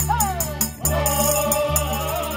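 An estudiantina (student tuna band) singing together, backed by strummed and plucked guitars and mandolin-type instruments, a double bass, and a pandero tambourine jingling about four times a second. A voice slides down at the start, then the singers hold a long note.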